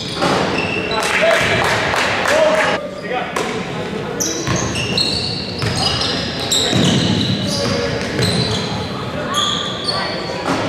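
Basketball game play on a hardwood gym floor: a basketball bouncing as it is dribbled, many short high squeaks of sneakers on the court, and players and spectators calling out, all echoing in a large gym.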